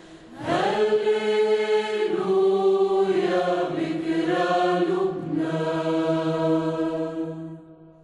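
Sung vocal chant holding long notes that move in pitch every second or so, starting after a short dip and fading out near the end.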